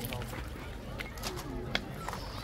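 Indistinct voices of people chatting in the background, with a few footsteps crunching on a pebble beach.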